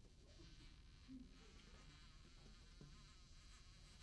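Near silence in a soft passage of a saxophone and piano duet: only a faint, thin, high whine, a very quiet saxophone tone.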